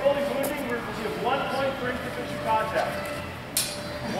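Voices talking in a large hall, then one sharp crack of a steel longsword strike near the end, with a brief ring after it.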